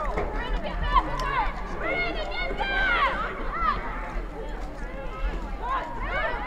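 Indistinct high voices shouting and calling out over one another across an outdoor soccer field, several short calls at a time with no clear words.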